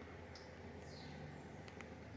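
Quiet room tone: a faint, steady low hum with a few faint ticks.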